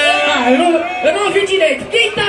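A man's voice amplified through a handheld microphone and PA, with no clear words.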